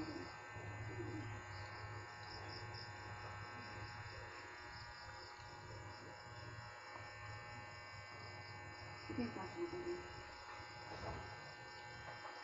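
A faint, steady low electrical hum with a thin high buzz pulsing about four times a second, and a few faint words late on.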